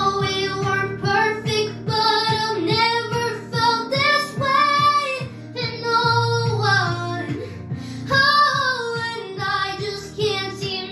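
A young girl singing into a microphone over a recorded instrumental backing track, with long held notes that waver in pitch and a steadily repeating low accompaniment.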